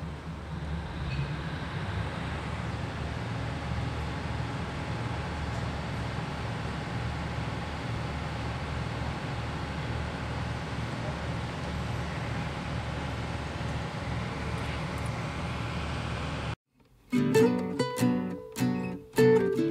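Steady low rumble of a railway platform where diesel passenger trains stand. Near the end it cuts off abruptly, and strummed acoustic guitar music begins.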